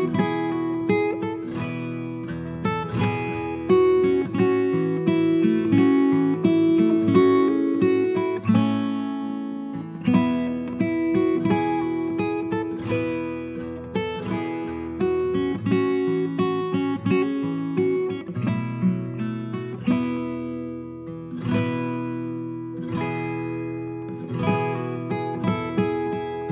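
Solo acoustic guitar playing a hymn tune instrumentally, a steady stream of picked and strummed notes with bass notes ringing under the melody.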